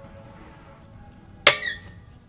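Stunt scooter striking a steel skatepark rail with a sharp metal clank about one and a half seconds in, followed by a brief squealing scrape as it grinds along the rail.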